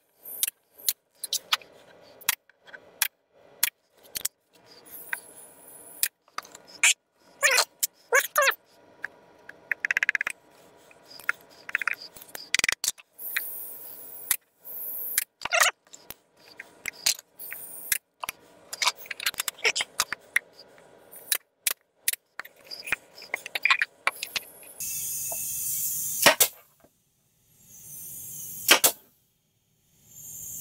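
Pneumatic nail gun shooting nails into the wooden roof of a birdhouse: a long run of sharp, separate shots and knocks, irregularly spaced. Two bursts of hissing noise come near the end.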